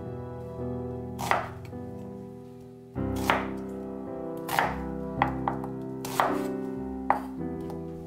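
A chef's knife cutting an onion into pieces on a wooden cutting board: about seven separate knocks of the blade on the board, irregularly spaced, over soft background music.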